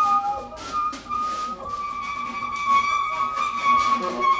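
Live jazz quartet playing: a saxophone plays a short phrase, then holds one long high note, over drums and double bass, with a few brief cymbal strokes near the start.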